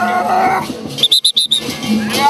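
A whistle blown in a quick run of five or six short, shrill blasts about a second in, over ongoing music. Just before it, a voice rises in a drawn-out cry.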